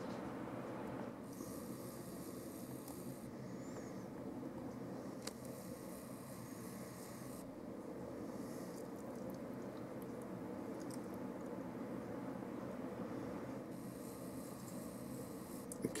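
Faint steady outdoor background noise, with a higher hiss that comes and goes in stretches.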